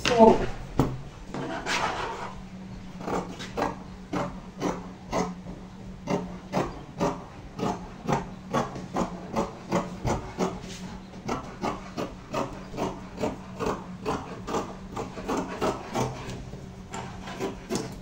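Scissors snipping through scuba knit fabric: a steady run of short crisp cuts, about three a second, from a few seconds in until near the end.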